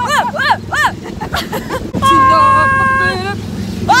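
A woman crying out in short rhythmic 'oh's, then a long held yell about two seconds in. Underneath is the steady low hum of the small ride car's engine.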